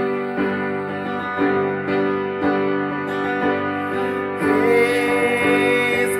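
Upright piano playing slow chords, a new chord about once a second; about four and a half seconds in the music grows fuller and louder, with a held higher melody note over the chords.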